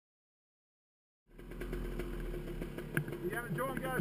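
Silence, then about a second in a dirt bike's engine comes in idling steadily with a low hum. There is a single click near the end, and a man's voice starts over it.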